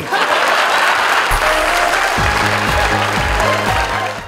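Studio audience applauding. About a second in, a music sting with a thumping bass line comes in under it.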